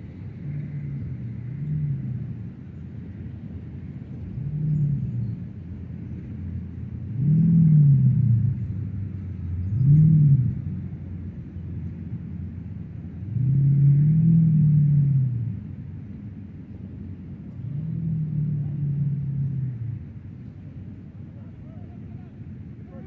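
Low engine drones from motor vehicles, about six in a row, each rising and falling in pitch over a second or two, over a steady low rumble. The loudest come around eight and ten seconds in.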